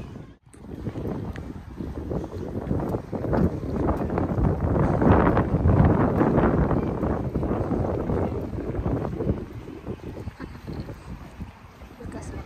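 Wind noise on the microphone, loudest around the middle and easing toward the end, mixed with a rumble from a pushed stroller rolling over grass.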